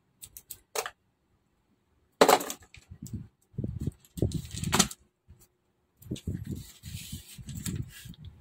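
Handling sounds from a roll of adhesive tape and scissors: a few light clicks, then irregular scrapes, rustles and knocks, with a short laugh near the end.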